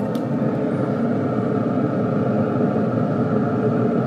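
Steady hum of a Traeger pellet grill's fan running while the grill is lit.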